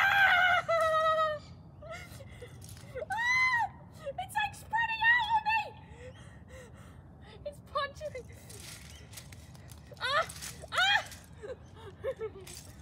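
A woman's pained cries and whimpers while she stands barefoot on Lego bricks: a loud wailing cry at the start, short squeals and whimpers a few seconds in, and two more sharp cries near the end.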